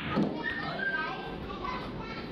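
Voices of several people, children among them, talking and calling out, with one sharp click at the very start.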